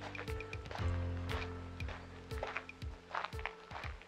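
Background music: sustained low notes with a steady percussive beat over them.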